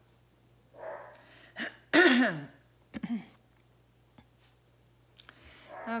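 A person coughing and clearing their throat: a breath about a second in, a loud cough about two seconds in with a falling voiced tail, and a shorter one a second later, with a few faint clicks between.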